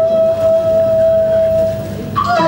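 Cantonese opera accompaniment: a single instrument holding one long, steady note.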